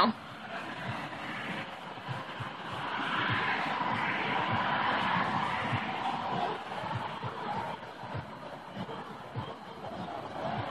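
Indistinct background chatter over a steady ambient hum, swelling a few seconds in and easing off after.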